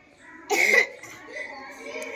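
A short, loud vocal burst about half a second in, followed by faint distant children's voices.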